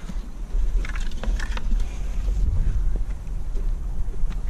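Wind buffeting the phone's microphone, a steady low rumble, with a handful of short clicks and scrapes about a second in.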